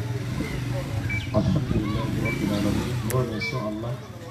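Indistinct voices of several people talking, none of it clear speech, with a sharp click about three seconds in.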